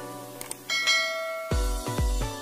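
A bright ding from a notification-bell sound effect, just after a short mouse-click sound, over background music. Near the end a bass-heavy electronic beat kicks in.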